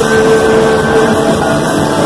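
A punk rock band playing live and loud, with electric guitar, bass guitar and drums through the venue's PA.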